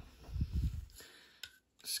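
Light handling noise from a small diecast model tow truck: a few soft low bumps, then a couple of faint clicks as its tilting flatbed is moved back down.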